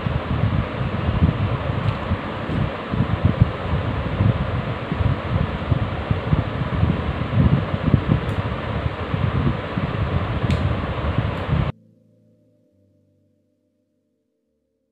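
Steady rushing background noise with an uneven low rumble, cutting off abruptly about twelve seconds in; faint music follows.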